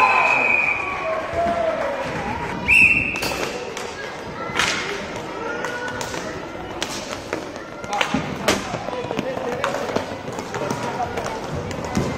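Inline hockey play in an arena hall: spectators shouting at the start, a short referee's whistle blast about three seconds in, then sharp clacks of sticks and puck on the plastic court as play restarts.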